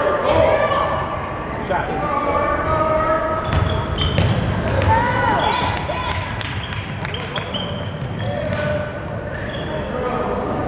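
A basketball dribbled on a hardwood gym floor, with repeated bounces and short squeaks, echoing in a large gym. Voices call out among the players and spectators.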